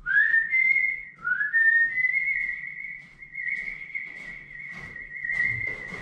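A person whistling: two notes that slide upward, then one long high note held for about four seconds. Light knocks and clicks sound in the second half.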